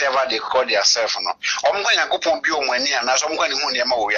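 Speech only: a caller talking steadily over a phone line, with brief pauses between phrases.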